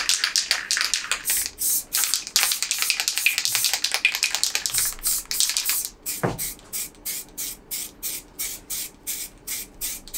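Aerosol spray paint cans hissing in repeated short bursts, dense at first, then shorter and evenly spaced at about two a second.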